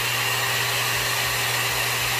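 Aria Beauty Marble blow-dry brush (a 1000-watt hot-air brush) running on its high heat/speed setting: a steady rush of air with a faint high whine.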